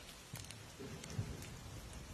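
Wood fire in a Swedish torch (an upright log split into vertical sections) crackling: a steady hiss with a few sharp pops, the loudest about a second in.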